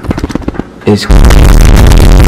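A "Triggered" meme sound effect, deliberately distorted and bass-boosted to clipping, cuts in suddenly about a second in at very high loudness. A quick run of clicks comes before it.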